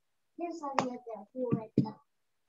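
A person's voice speaking a few short words over a video call, with a few sharp clicks among the words.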